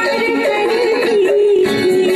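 A recorded Hindi film song plays: a sung vocal line held over its band accompaniment, with an electric guitar strummed along on the chords, moving from F# to F# minor.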